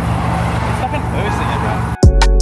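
A car engine running steadily at low revs, with faint voices over it.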